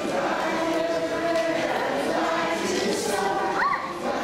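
A group of voices singing together in held, steady notes, the song for a children's circle dance. A short high rising-and-falling sound cuts through near the end.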